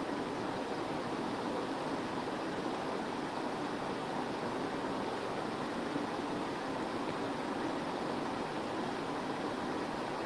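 Steady, even hiss of background room noise, with no speech and no distinct events.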